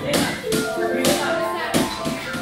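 Digital piano music: held notes with several sharp percussive taps over them.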